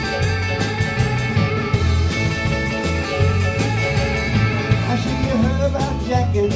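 Live rock-and-roll band playing an instrumental passage: electric lead guitar over rhythm guitar, bass guitar and drum kit, at a steady beat.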